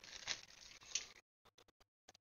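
Clear plastic parts bag crinkling as plastic model-kit parts trees are handled and drawn out of it, with a couple of louder rustles in the first second, then a few faint clicks of the plastic parts.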